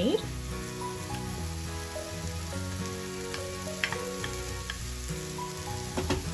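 Vegetables and masala sizzling in a kadai as grated paneer is tipped in from a glass bowl and pushed off with a wooden spatula, with a few sharp scrapes or clicks of the spatula about halfway through.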